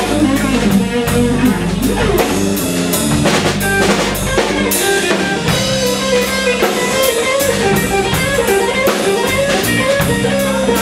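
Live blues band playing: a Stratocaster-style electric guitar plays a lead line with bent notes over a drum kit's steady beat and an electric bass.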